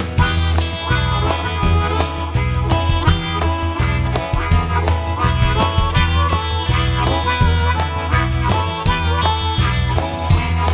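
Instrumental break in a country song: a harmonica solo with bent notes over bass and a steady beat.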